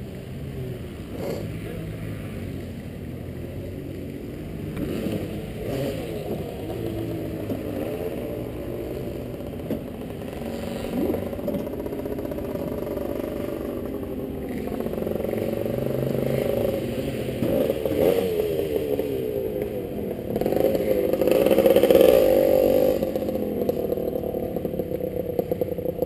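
Honda CR two-stroke dirt bike engine running at low revs as the bike rolls slowly over gravel, with a few knocks and clatters. Throttle blips make the pitch rise and fall, loudest a few seconds before the end.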